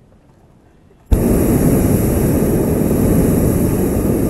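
Hot-air balloon's propane burner firing overhead: a loud, steady rushing blast that starts abruptly about a second in and holds.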